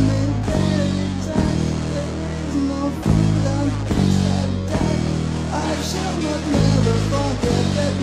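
Rock band recording with guitar playing over low sustained bass notes that change every second or so.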